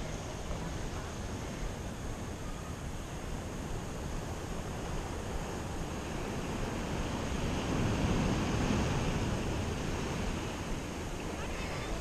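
Steady wash of surf on a beach with light wind on the microphone, rising a little about eight seconds in.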